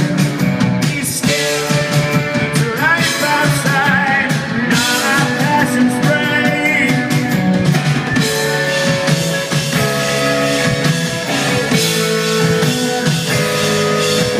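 Live rock band playing: electric guitars and drum kit, with a male voice singing, loud and continuous.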